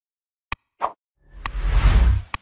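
Sound effects of an animated like-and-subscribe button: a sharp mouse click about half a second in, a short pop, then another click as a whoosh with a deep rumble swells toward the end.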